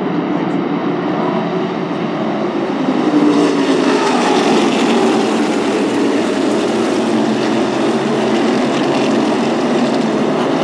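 A pack of V8 modified race cars running at speed around the track, their engines blending into one continuous drone. It grows louder and brighter about three seconds in as the cars pass close by.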